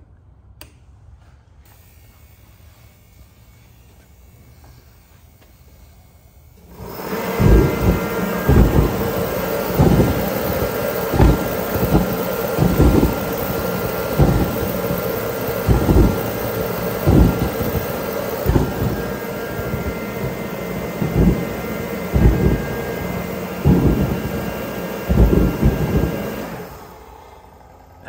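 Mr. Heater 125,000 BTU kerosene torpedo heater switched on: after about seven seconds its fan and burner start with a loud steady rush and whine, with irregular low thumps throughout, then it runs down and shuts off near the end. It is getting fuel and spark but cannot sustain a flame and blows white smoke, which the owner suspects is caused by a dirty photo-eye flame sensor.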